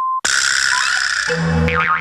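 A steady test-tone beep near 1 kHz, the kind that goes with colour bars, cuts off about a quarter second in. It is followed at once by a loud burst of edited cartoon soundtrack: music with sound effects and sliding pitches, then held notes from about halfway through.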